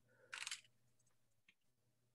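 Near silence, broken by one brief burst of computer keyboard typing about a third of a second in and a faint tick near the middle.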